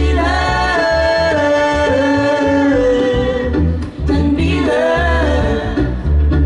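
A woman sings long held notes that step and slide slowly downward, with a second shorter phrase near the end. She is accompanied by an acoustic string band with mandolin and a low bass line that drops in and out.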